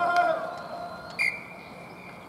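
Men shouting on the rugby pitch, then a little over a second in a single steady referee's whistle blast, held for about a second.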